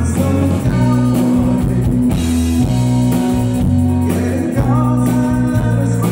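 Live country-western music: a man singing through a microphone over a band with electric guitar and steady low bass notes.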